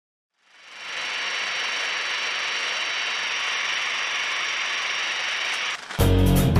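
A steady hiss of static-like noise fades in during the first second, holds evenly, and cuts off abruptly near the end.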